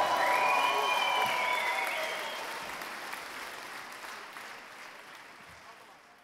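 Live concert audience applauding after a song, the applause fading out steadily to silence.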